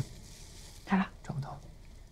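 Soft, half-whispered speech: a short phrase at the start and another about a second in, over low room tone.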